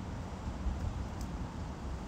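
Low, steady rumble of street background noise with distant traffic.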